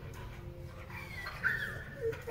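A small dog, a Shih Tzu, whimpering faintly while a sedative takes hold: one short, high, wavering whine about a second in, over a low steady room hum.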